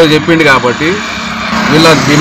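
Speech only: a man speaking into a handheld microphone.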